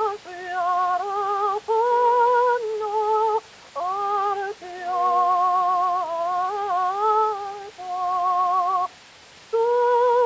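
Mezzo-soprano singing a line of held notes with a wide vibrato, broken by short breaths, on a 1906 Zonophone acoustic disc recording; the sound is thin, with no low end.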